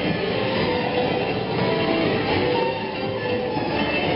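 Music over a steady, dense rumbling noise with no clear beginning or end.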